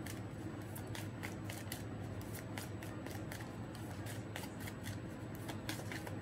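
A tarot deck being shuffled by hand, overhand style: packets of cards slapping and snapping together in quick irregular strokes, several a second. A low steady hum runs underneath.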